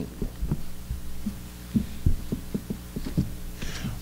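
Steady low electrical hum through the lectern microphone and sound system, with a series of soft, irregular low thumps.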